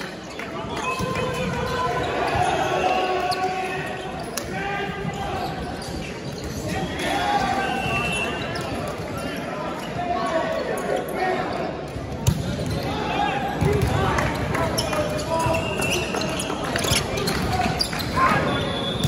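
Players' voices calling and chattering in a large, echoing sports hall during an indoor volleyball match, with a volleyball bouncing on the hardwood court. A sharp hit about twelve seconds in, with more hits of the ball near the end as a rally starts.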